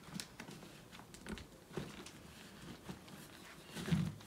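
Faint rustling and light scattered taps of a stiff plastic insert being slid into a fabric pocket on the deck of an Advanced Elements inflatable kayak, with a louder soft knock near the end.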